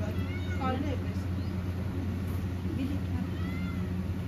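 Steady low hum of a room air cooler's fan. Short, high-pitched voice sounds come in about half a second in and again near the end.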